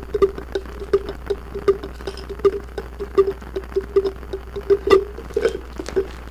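A small clear jar tapped over and over with fursuit paws, about three taps a second, each tap giving a short hollow ring at one pitch. The loudest tap comes about five seconds in.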